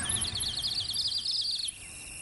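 A songbird's rapid warbling trill, high-pitched, that breaks off about a second and a half in, leaving a faint steady high insect-like tone.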